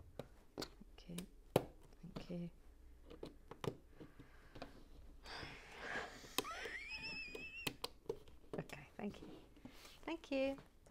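LEGO bricks clicking together and plastic pieces being handled, with sharp clicks scattered through. Around the middle, a breathy sound and then a rising, wavering high tone that holds for about a second and a half.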